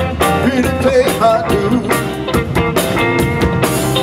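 Live blues band playing: electric guitars, bass guitar and drum kit, with a lead line of bent, wavering notes over a steady beat.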